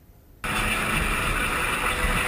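Steady engine and wind noise of a boat out on the water, cutting in suddenly about half a second in.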